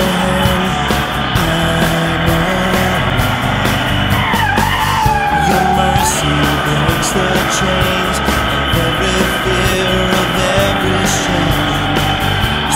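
Zero-turn riding mower's engine running steadily as it is driven on a concrete driveway, with a brief wavering high tone around the middle.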